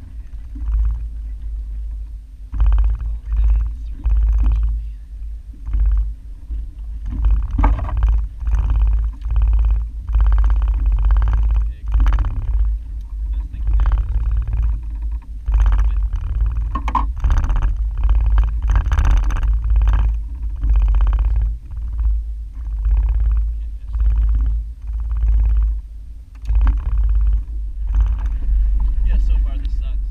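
A man talking in short phrases over a heavy, steady low rumble of wind on the microphone.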